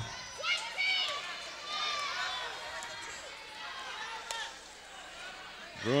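Gym sounds of a basketball game in play: high sneaker squeaks on the court floor in the first half, a single sharp knock about four seconds in, and a low murmur of crowd voices.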